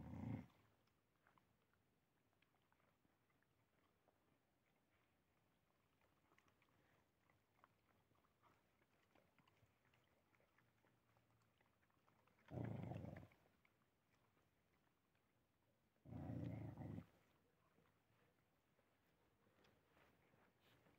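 A dog growling over a shared pile of tortillas, guarding the food from the other dogs. There are three growls: a short one at the start, then two longer ones about twelve and sixteen seconds in, with faint chewing between.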